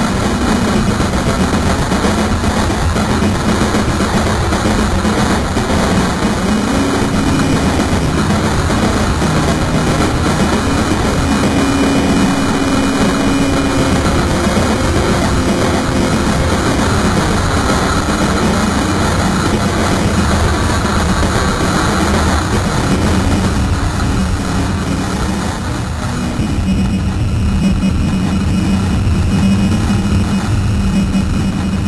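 Experimental noise music: a loud, dense wall of rumbling noise over low droning tones, its upper hiss thinning out near the end.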